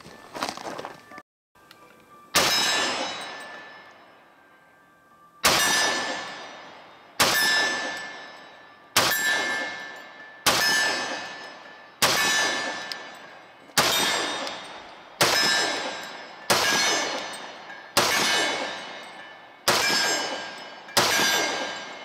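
Walther PPQ M2 pistol in .40 S&W firing twelve shots, about one every one and a half seconds. Each shot is followed by the ring of a struck steel target and a long, fading echo.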